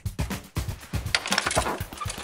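A glass storm door being opened: a run of sharp clicks and knocks from the latch and frame, then a metallic rattle about a second in as a small dog squeezes out through it.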